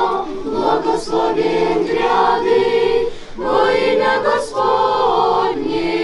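A church choir singing an Orthodox litany response a cappella, in two sustained phrases with a short break about three seconds in.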